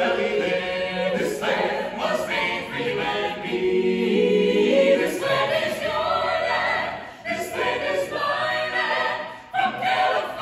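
Mixed a cappella choir of men's and women's voices singing together in harmony, with no instruments, in a domed rotunda that adds reverberation. The singing pauses briefly between phrases about seven seconds in and again near the end.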